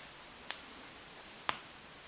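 Two short, sharp clicks about a second apart, the second louder, over a steady high-pitched hiss.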